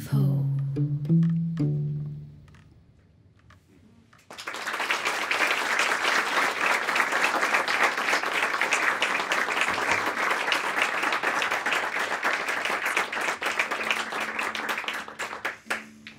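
The last notes of an electric guitar ring and fade over the first two seconds. After a short hush, an audience applauds from about four seconds in, a dense clapping that lasts roughly eleven seconds.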